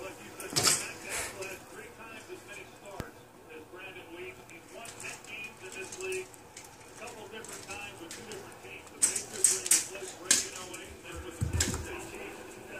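A dog moving about a room, with sharp clicks and rattles: one near the start and a loud quick cluster about nine to ten and a half seconds in. Faint voices murmur in the background.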